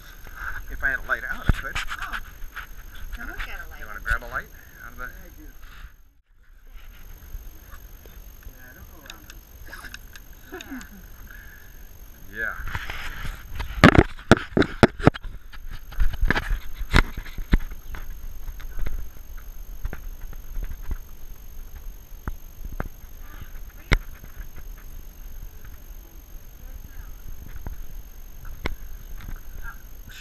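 Muffled voices picked up through a GoPro's waterproof housing, sounding narrow and nasal. Sharp knocks and scrapes of the camera against rock, loudest in a cluster about 13 to 17 seconds in.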